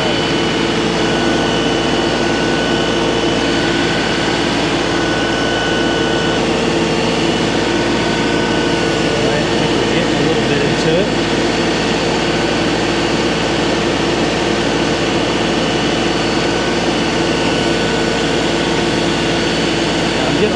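LS compact tractor's diesel engine running steadily at raised throttle, driving a skid steer hydraulic auger on the front loader as it turns down into hard, dry soil.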